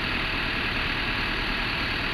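Large bus engine idling steadily nearby.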